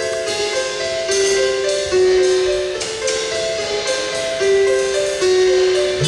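Live band's instrumental intro: an electronic keyboard plays a slow melody of held notes, with a few percussion hits about one, two and three seconds in.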